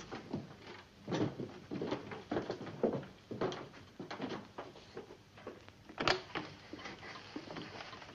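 Footsteps of several people hurrying along a hallway, about two steps a second, with a louder knock about six seconds in, like a door.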